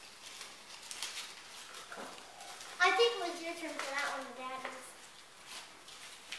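A small folded paper slip being unfolded by hand, with light, short crinkles and rustles, and a drawn-out 'okay' from a voice in the middle.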